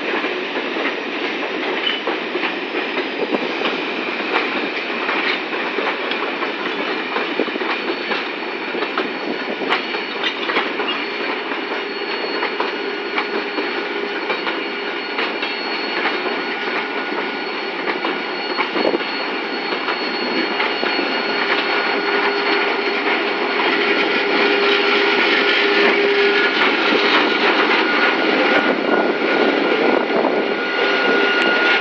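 Empty freight hopper wagons rolling slowly past, wheels clicking over the rail joints, with long steady wheel squeals. Near the end the sound grows louder as the EMD GT22 diesel locomotive comes alongside.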